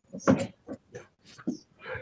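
Scuffs, bumps and breaths on a handheld microphone as it is picked up and brought toward the mouth: a string of short, irregular bursts.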